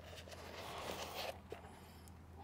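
Faint scratchy rustling of a gloved hand digging dirt out of a paper cup, with a small click about one and a half seconds in, over a low steady hum.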